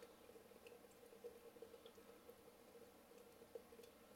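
Near silence: faint room tone with a steady low hum and a few faint ticks.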